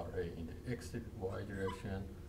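Indistinct speech, a voice with sweeping, rising and falling pitch, over a steady low hum in the room.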